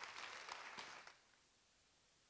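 Faint audience applause that cuts off suddenly about a second in.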